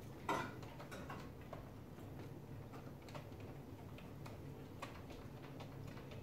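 Faint, scattered light clicks and ticks of a VGA cable connector being screwed in by hand at the back of a computer, its thumbscrews turned to tighten the connection, with one louder click just after the start.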